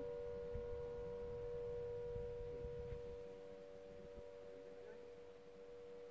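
Ramadan iftar siren sounding a steady, level tone that neither rises nor falls, signalling the time to break the fast. A low rumble under it stops about three seconds in.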